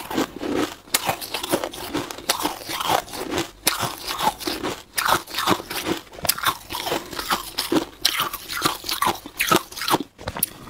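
Powdery freezer frost crunching as it is scooped with a plastic spoon and bitten and chewed, a dense, irregular run of dry crunches, several a second.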